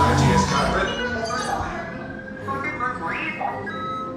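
Short electronic beeps and warbling chirps from a BB-8 droid figure, over background music and a murmur of crowd chatter.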